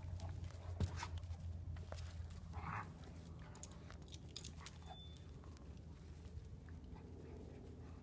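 Two young German Shepherds playfighting, with short dog noises and scuffles and a brief higher-pitched dog sound a couple of seconds in, over a steady low hum.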